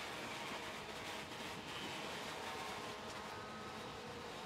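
A field of two-stroke racing kart engines buzzing steadily at a distance, a faint, even drone.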